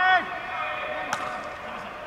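A player's loud, high-pitched shouted call at the start, followed about a second later by a single sharp crack of a baseball impact during fielding practice, over faint background voices.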